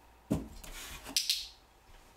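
A small cardboard box handled and set down on carpet: a dull thump about a third of a second in, then a second of scraping and rubbing with a sharp click in the middle.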